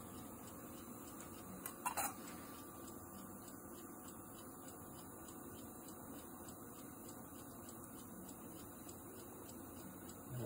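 Quiet room tone with a faint steady hum, broken by two brief sharp clicks about two seconds in.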